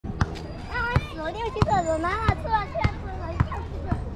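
Children's voices calling and shouting, high-pitched and gliding, with a regular thud about every 0.6 seconds cutting through them.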